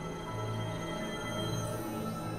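Dark experimental synthesizer drone music: many steady held tones layered over a low note that sounds in held stretches of about half a second.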